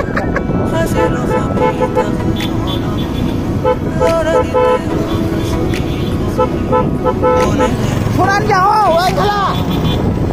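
Vehicle horn sounding in groups of short beeps over the steady rumble of a vehicle moving along a rough dirt road.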